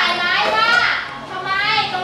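Children's voices speaking: students in a classroom.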